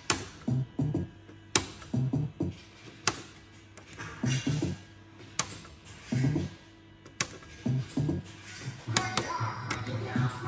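Lucky Balls fruit machine playing in demo mode while its reels spin, giving out electronic music and low beeping tones. Sharp clicks come about every one and a half to two seconds.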